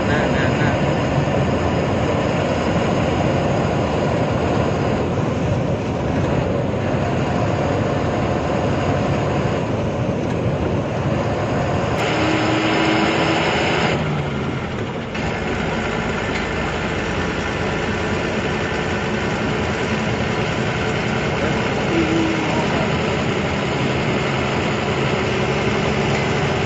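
Truck engine running with road noise, heard from inside the cab; a steady, loud drone.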